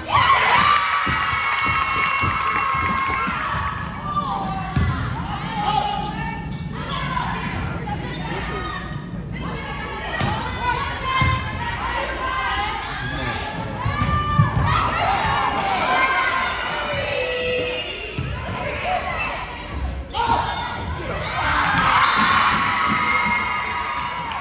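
Girls' volleyball rally in a gym: the ball smacks off hands and arms and bounces on the floor. Players shout and call, with teammates cheering, loudest right at the start and again near the end.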